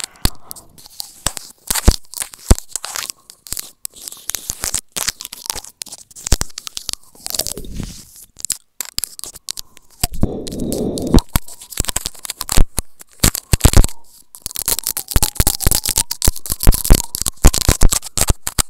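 Teeth nibbling and biting on a small microphone held at the lips, heard right on the mic: a dense, irregular run of crunching clicks and scrapes, with a louder low rubbing rumble about ten seconds in.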